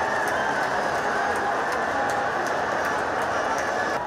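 Steady crowd din filling a football stadium, with a few faint, brief whistle-like tones above it.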